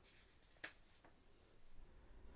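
Near silence, with a faint brush of paper a little over half a second in and a soft rustle near the end as sheets of paper are moved on a desk.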